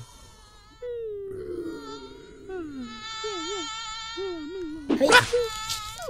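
Cartoon mosquito buzzing: a thin whine that glides down in pitch and then wavers up and down, with a character's wavering voice beneath it. A loud sharp burst comes about five seconds in.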